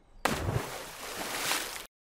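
Large RC model seaplane, a VQ Models DHC-6 Twin Otter, crashing onto a lake: a noisy splash and rush of water that starts suddenly and is cut off abruptly near the end.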